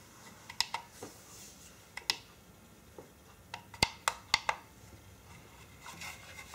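Sharp plastic-and-metal clicks and taps of an 18650 lithium-ion cell being pressed into the spring-loaded slot of a LiitoKala Lii-500 battery charger and the charger being handled, with the loudest run of clicks a little before the end.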